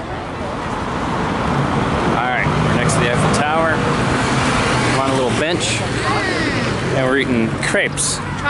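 Street traffic with a vehicle engine's steady low hum, overlaid from about two seconds in by the voices of people talking and passing by.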